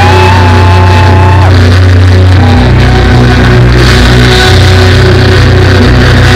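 Live punk rock band playing loud, with distorted electric guitar, bass and drums. Near the start a note slides up and holds for about a second and a half over the steady bass.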